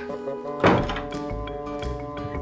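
Background music holding sustained chords, with one loud thunk a little over half a second in.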